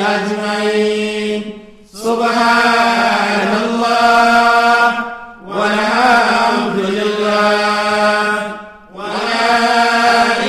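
A chanted vocal in long, held phrases over a low steady note, breaking off briefly three times, about every three and a half seconds.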